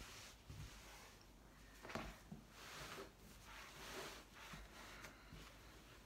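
Faint rustling of flannel fabric squares being smoothed by hand onto a quilt base, in a few soft swishes; the sharpest comes about two seconds in.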